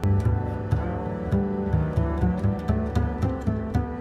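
Background music with a low bass line moving from note to note under quick, sharp percussive ticks.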